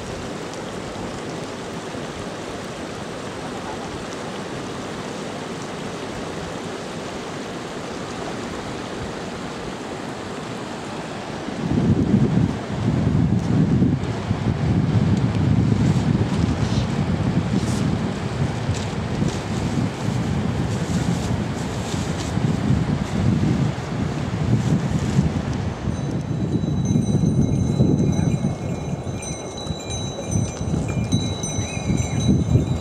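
A steady hiss, then partway through, wind gusting hard against the microphone. Near the end, bells on a caravan of pack yaks ring steadily over the wind.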